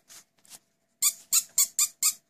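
A Pekingese dog giving a quick run of about five short, high-pitched squeaky whines in the second half.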